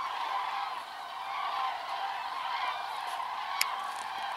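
A large flock of common cranes calling in flight, a dense continuous chorus of many overlapping trumpeting calls. A single sharp click comes near the end.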